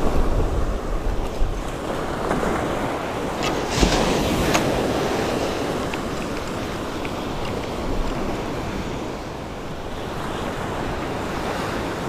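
Ocean surf washing steadily onto a sandy beach, with wind buffeting the microphone.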